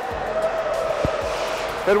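Skate blades hissing and scraping on rink ice during a skating drill, over a steady held tone, with one dull knock about a second in.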